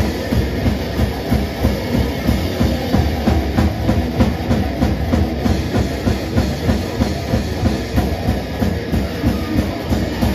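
Experimental noise-metal band playing live: distorted electric guitar, drum kit and electronic noise from a handheld instrument blend into a dense, driving wall of sound, with accents about three times a second.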